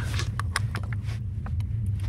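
Steady low rumble of a car's engine and road noise heard inside the cabin, with a few faint clicks.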